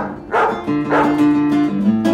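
Acoustic guitar being strummed: three quick strums in the first second, then chords ringing on.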